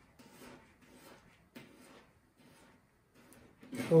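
Kitchen knife slicing peeled garlic cloves thinly on a plastic cutting board: a series of faint, irregular cuts and taps of the blade against the board.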